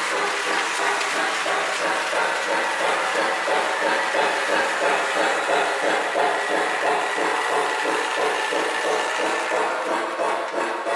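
Lionel O-gauge toy train running steadily past on three-rail track: a steam locomotive and tender pulling freight cars, wheels clattering over the rails with an even motor hum.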